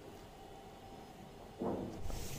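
Faint room tone with a low steady hum while a kitchen knife cuts through soft kalakand on a plate, then a brief dull knock about one and a half seconds in as the knife is lifted off the plate.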